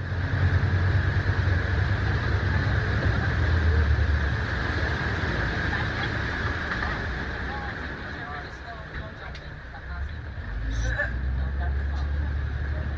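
A tour boat underway on a lake: a steady low engine rumble with a rushing noise of water and passing air over it.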